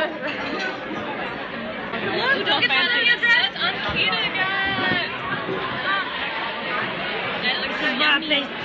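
Several people chattering and talking over one another, with the babble of a busy dining hall behind.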